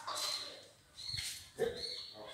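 Animal calls: a few short, high cries, the loudest and sharpest about one and a half seconds in.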